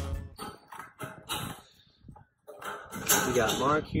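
Tin snips cutting sheet-metal roof flashing: a few short, sharp metallic snips in the first second or so. Then a man starts talking near the end.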